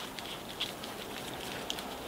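Faint rustling with scattered light clicks from climbing rope and harness hardware being handled.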